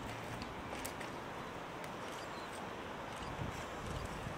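Quiet open-air background with a few faint crunches and clicks of footsteps on loose stones.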